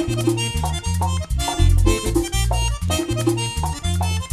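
Merengue típico band playing an instrumental passage. The accordion plays short, repeated melodic phrases over a stepping bass line, with steady high percussion ticks.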